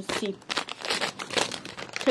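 Paper store receipt crinkling as it is unfolded and handled, a quick run of rustles.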